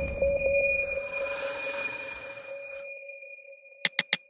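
Film sound-design hit: a low boom with a high, steady ringing tone that fades away over about three seconds. Near the end, evenly spaced pitched ticks start up, the opening of a song's beat.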